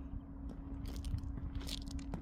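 A few irregular footsteps crunching on loose gravel.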